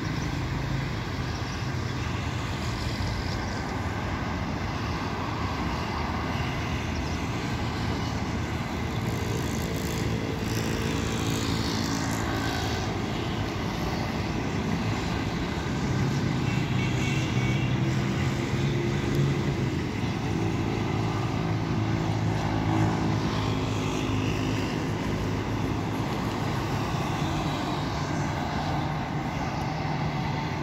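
Steady drone of motor-vehicle engines running at low revs. It grows a little louder about halfway through and eases off near the end.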